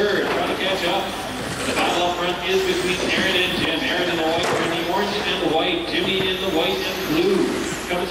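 Indistinct male speech in a large hall, with a steady low hum beneath.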